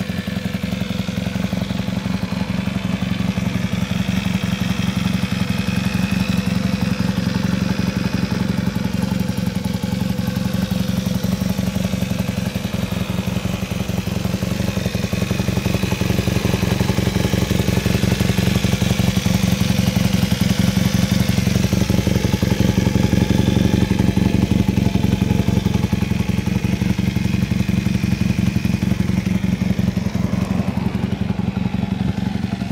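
1978 Honda Hawk II CB400T's air-cooled parallel-twin engine idling steadily through an aftermarket muffler, with an even, unbroken beat that grows slightly louder in the second half.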